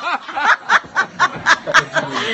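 A person laughing in quick, short bursts, about four a second.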